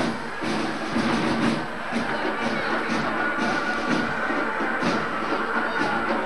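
Band music with a steady drumbeat, about two beats a second, mixed with the hubbub of a street crowd.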